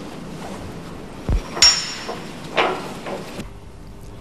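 Steel tools being handled at a hydraulic bolt-tensioning jack on a large diesel engine's stud: a dull knock about a second in, then a sharp ringing metallic clink, and a fainter clink a second later.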